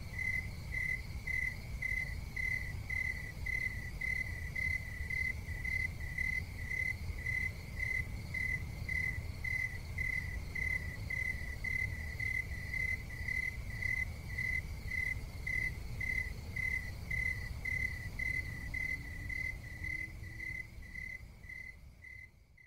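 Steady, evenly spaced high chirping like a cricket's, about two chirps a second, over a low rumble; it fades out near the end.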